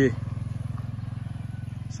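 A small engine running steadily: a low, evenly pulsing hum.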